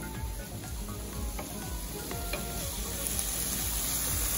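Shredded jackfruit filling sizzling in a nonstick frying pan as a wooden spatula stirs it.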